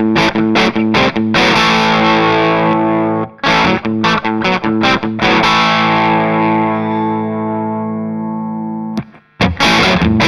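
Smitty Custom Coffeecaster electric guitar with P90 pickups, played through a Palmer DREI valve amp. Strummed chords with two of them left to ring for a couple of seconds each; the second is cut off sharply about nine seconds in, and the strumming starts again.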